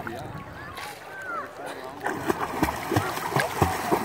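Water splashing as a child kicks along on a bodyboard, irregular splashes starting about halfway through and growing louder. Faint voices in the background.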